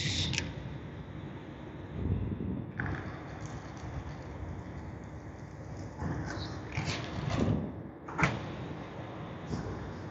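Corrugated plastic wire loom being handled and trimmed: scattered rustles and a few sharp clicks, the sharpest about three seconds in and again about eight seconds in.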